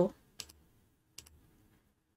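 Two faint computer mouse clicks, under a second apart.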